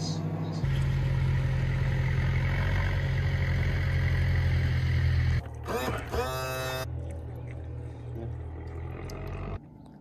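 Cookworks microwave oven running: a steady low electrical hum that steps up louder about half a second in and lasts about five seconds. It then gives way to a short burst of changing pitched sounds and a quieter low hum.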